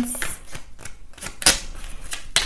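A few scattered light clicks and taps, the sharpest about one and a half seconds in.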